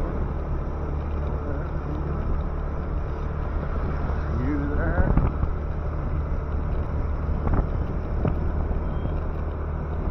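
Small motorcycle engine running at a steady cruise with wind rushing over the microphone as it rides along.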